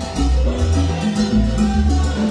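Live salsa band playing, with a bass line, congas and other percussion keeping a steady dance rhythm under held chords.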